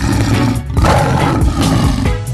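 A loud, rough roar-like sound effect over music, at the changeover between two songs in a DJ mix.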